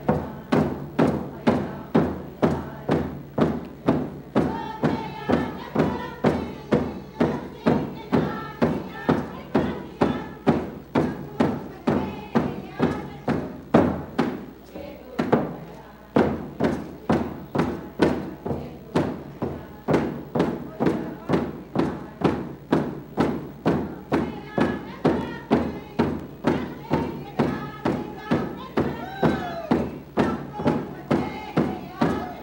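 Alaska Native hand drums struck in a steady, even beat, about three beats every two seconds, with a brief lull about halfway through. A group of voices sings a traditional song in unison over the drumming.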